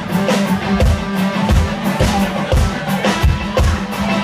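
Live country-rock band playing loudly: electric guitars and bass over a drum kit with a steady, regular kick-drum beat and cymbals.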